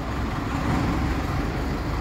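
Steady road traffic noise: a low rumble of passing vehicles.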